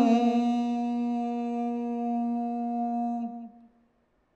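A Buddhist monk chanting Pali pirith holds one long, steady hummed note at the end of a chanted line. The note fades and stops about three and a half seconds in.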